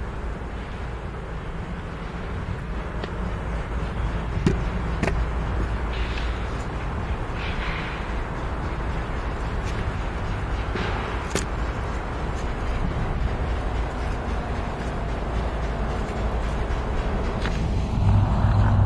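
Diesel freight locomotives approaching slowly, their engines running with a steady low rumble under load. A few sharp clicks are heard, the loudest about eleven seconds in.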